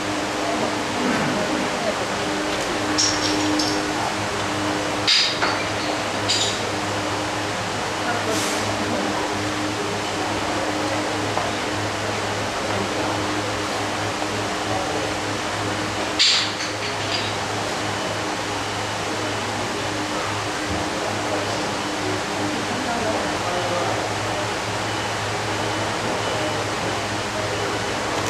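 Steady background noise with a low hum and indistinct voices, broken by a few short clinks, the sharpest about five seconds in and again about sixteen seconds in.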